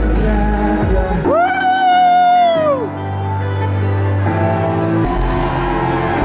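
Live pop song with singing and a band. About a second in, a long high note is held and bends down at its end while the bass drops out briefly, and then the bass comes back in.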